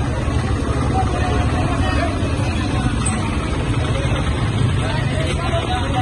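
Crowd of people talking over one another in the street, no single voice standing out, over a steady low rumble.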